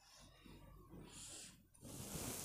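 Near silence: room tone, with faint marker strokes on a whiteboard about a second in.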